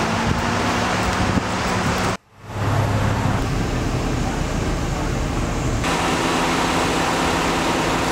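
Steady outdoor noise of a parking lot, with wind on the microphone and a low hum, cut off by a brief dropout about two seconds in; the hiss softens near six seconds, leaving mostly the low hum.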